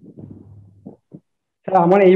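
Speech over a video call: a faint, low mumble in the first second, dropping to dead silence, then a man's voice starting to speak loudly near the end.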